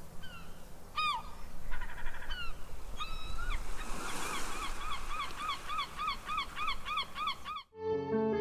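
A gull calling over steady surf noise: a few separate yelping calls, then a quick run of about ten laughing calls. The calls cut off sharply near the end as piano music begins.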